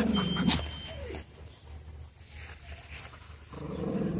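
A dog growling during rough play with puppies: a low, pulsing growl in the first half second, quieter for a couple of seconds, then another growl near the end.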